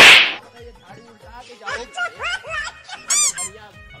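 Comedy sound effects: a loud, short noisy burst right at the start, then sliding, warbling tones and, about three seconds in, a brief high-pitched squeaky warble.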